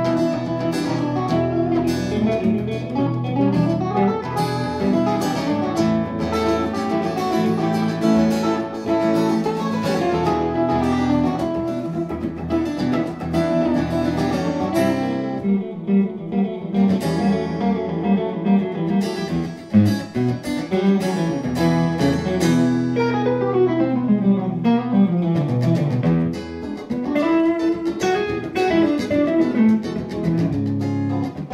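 A guitar trio of two electric guitars and an acoustic guitar playing an instrumental jazz-rock fusion piece, with picked melodic lines running over strummed and plucked chords.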